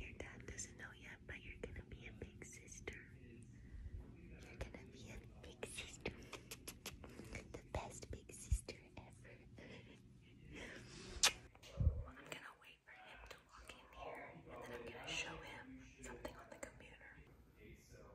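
A woman whispering softly close to a phone microphone, with scattered clicks, rustles and a few light knocks from handling the phone and bedding.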